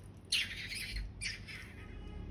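A nearly empty rubber balloon sputters out the last of its liquid and air through its neck in two short, squawky, hissing spurts.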